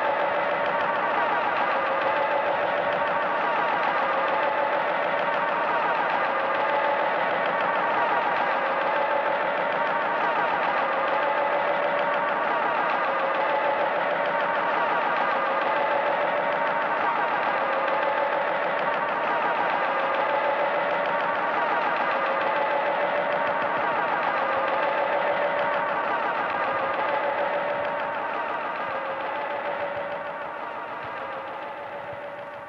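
Soundtrack of a performance film played over the hall's speakers: a dense, steady droning sound with a fast wobble, fading near the end.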